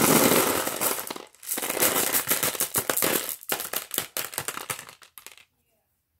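Glass marbles pouring from a mesh bag into a plastic tub of marbles, a dense clatter of clicking glass-on-glass that comes in waves, thins out and stops about five and a half seconds in.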